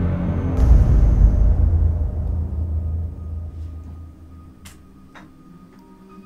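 A deep cinematic boom in the film score, coming in about half a second in and fading away over the next few seconds, followed by soft held tones and a couple of faint ticks.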